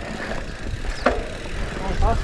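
Mountain bike riding along a dirt singletrack: a steady low rumble of tyres, trail and wind on the microphone, with one brief sharp sound about a second in.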